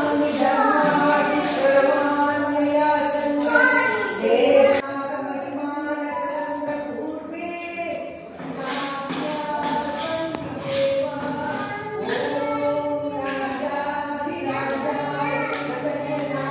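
Group of voices singing a devotional aarti hymn, with long held melodic notes and a brief dip in the singing about halfway through.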